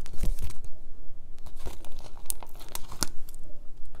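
A sticker being peeled off its backing and the sticker sheet crinkling as it is handled, heard as irregular crackles and small sharp clicks.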